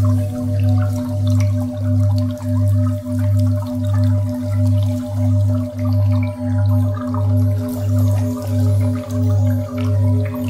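Sound-healing meditation music: a steady 528 Hz tone over a deep drone that swells and fades about one and a half times a second, with faint water-drip sounds scattered on top.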